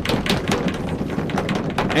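A drum roll made by several people drumming their hands rapidly on a tabletop: a fast, irregular run of taps and thuds.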